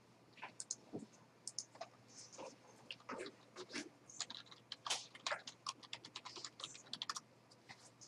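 Computer keyboard typing: quick, irregular keystrokes, with a faint steady hum underneath.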